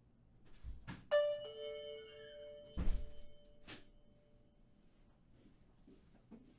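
Two-note doorbell chime, a high 'ding' followed by a lower 'dong', starting about a second in and ringing away over a couple of seconds, with a few dull thuds just before and after it.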